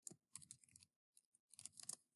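Faint keystrokes on a computer keyboard as a word is typed: a few scattered taps, then a quicker run of taps near the end.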